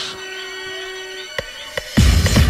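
Stripped-back breakdown in a bounce (scouse house) track: a held synth tone over sparse, quiet music, stopping about two-thirds in, with two sharp hits near the end.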